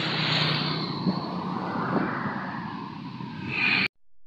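A vehicle passing close by on the street, a loud rushing noise that swells and sweeps in pitch. It cuts off abruptly near the end.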